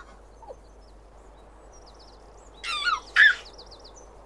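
Soft birdsong chirping. About two and a half seconds in, a baby giggles in two short bursts, the second louder.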